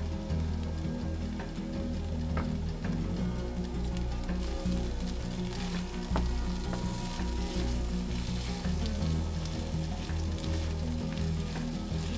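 Gallo pinto, rice and black beans with diced peppers, frying in a nonstick skillet and sizzling steadily while a wooden spoon stirs and scrapes it around the pan.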